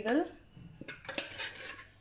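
Steel ladle scraping and knocking against a steel bowl and pot while mashed peas and potato are scooped into the pot: a few sharp metal clinks about a second in.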